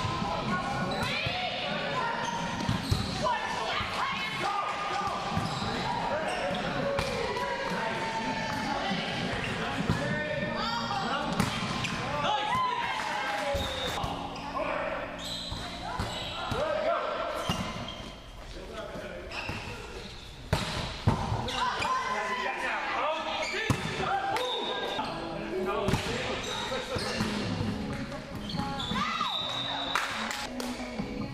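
Indoor volleyball being played in a large, echoing gym hall: repeated sharp smacks of the ball being served, passed and hit, mixed with players' indistinct shouted calls and chatter.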